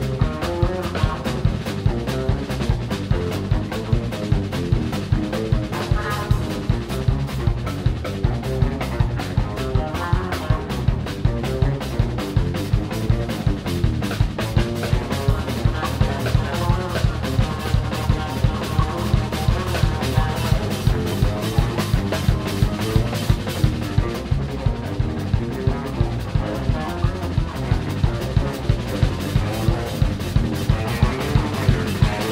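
A live blues-rock band playing an instrumental boogie: electric guitar and bass guitar over a drum kit keeping a steady, fast beat.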